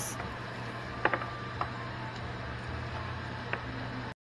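A wooden spatula clicking lightly against a plastic meat tray and the pan, a few separate taps, as raw chicken pieces are scraped into the pan. Under it runs a steady hiss with a low hum.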